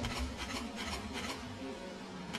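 Gymnast's hands rubbing and rasping against the low bar of the uneven bars as she circles it, a quick run of short scratchy strokes.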